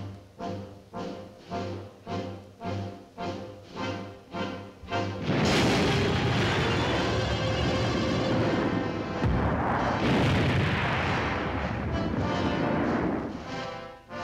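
A steady pulsing musical beat, about two a second, builds suspense. About five seconds in, a simulated atomic explosion goes off with a sudden loud blast that rolls on for about eight seconds before fading.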